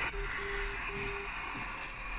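Radio receiver audio tuned to a 400 kHz non-directional beacon: a hiss of static with the beacon's keyed tone sending Morse code, one short beep followed by two longer ones.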